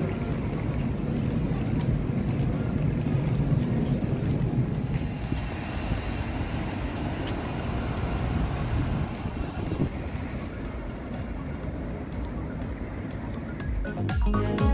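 Steady city traffic noise, a low rumble of passing cars, easing slightly in the second half.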